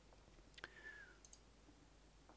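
Near silence, with a few faint computer-mouse clicks while a colour is picked on screen.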